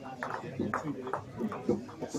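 Hall ambience of many players talking at once, with a few sharp clacks of bowls knocking together on the rinks.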